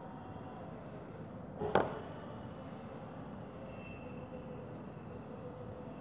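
A single short, sharp knock or click about two seconds in, over steady room noise with a faint hum.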